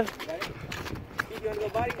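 A few short knocks and scuffs from two boxers sparring on asphalt, with faint voices in the background.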